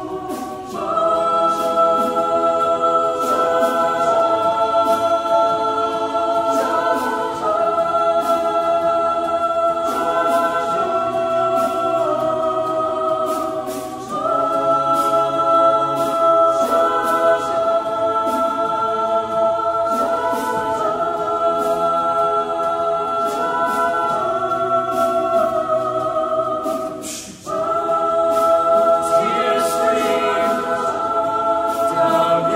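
Small a cappella chamber choir singing held chords, the harmony changing every few seconds, with a brief break near the end before the next chord comes in.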